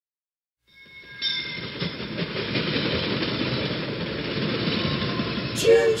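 Train sound effect opening a boogie song: the steady rolling noise of a train fades in about a second in and keeps going. Near the end a voice sings "choo" over it.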